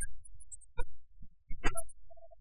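Sparse plucked notes from sanxian and pipa in Suzhou tanci accompaniment: a few single strokes about a second apart over a low hum.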